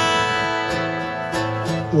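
Two acoustic guitars strumming chords, with the chords ringing on between a few strokes. A man's singing voice comes back in at the very end.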